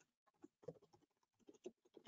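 Faint typing on a computer keyboard: a scatter of soft, irregular key clicks.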